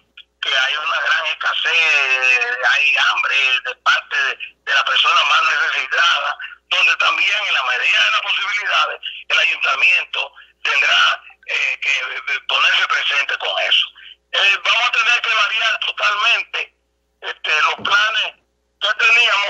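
A man speaking over a telephone line in continuous phrases with short pauses; the voice is thin, with little low end.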